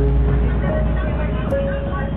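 Indistinct voices talking over a steady low rumble, heard through a muffled, low-quality recording.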